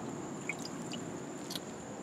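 Faint water sounds and small ticks as a hand lifts a freshwater mussel out of shallow tub water, over a steady quiet hiss.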